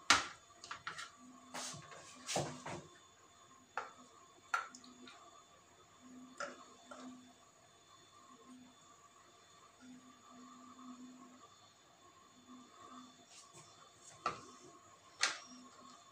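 Scattered light clicks and knocks of plastic containers handled on a glass tray as a milk-and-oil emulsion is poured from a plastic measuring cup into a plastic spray bottle. The sharpest knock comes right at the start, with a few more in the first three seconds and two near the end.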